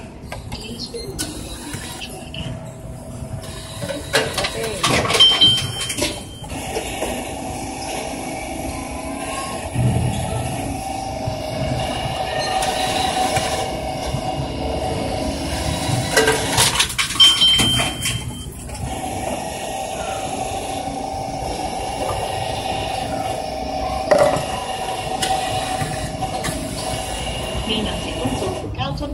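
Reverse vending machine taking in plastic bottles, twice: a clatter of knocks as a bottle goes in, a short high beep, then the machine's motor whirring steadily for several seconds while it handles the bottle.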